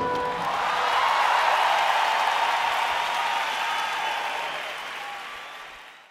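A large concert audience cheering and applauding at the end of a live song, with the last held note of the band dying away in the first half second. The crowd noise fades out over the last couple of seconds.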